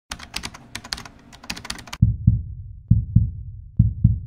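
Sound effects of a channel intro: rapid, irregular sharp clicks for about two seconds, then deep low thumps in pairs, like a heartbeat, about one pair a second.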